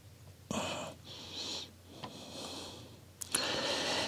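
A person breathing close to the microphone: several soft breaths, with a slightly louder intake near the end just before speaking resumes.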